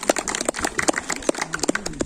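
A rapid, irregular run of sharp clicks and crackles, about ten a second.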